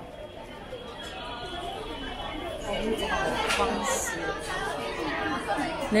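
Overlapping voices of shoppers and stallholders chattering along a crowded street market, getting louder about halfway through.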